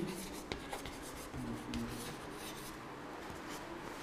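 Chalk writing on a blackboard: a run of faint, short scratching strokes as a word is written.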